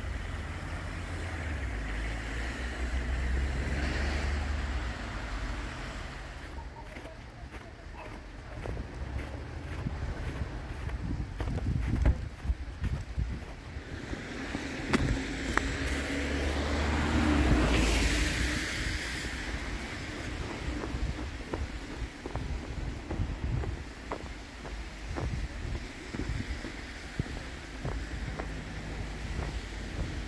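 Footsteps crunching through deep fresh snow, with wind buffeting the microphone in low rumbles. Cars pass on a slushy street in the first few seconds, and a louder hiss swells and fades a little past halfway.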